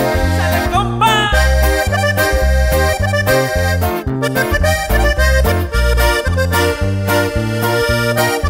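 Instrumental intro of a norteño song: button accordion playing the melody over a bass line with a steady rhythm, no singing yet.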